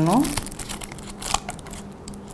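Paper cocktail umbrella being opened and handled in the fingers: a few faint, scattered paper crinkles and light clicks.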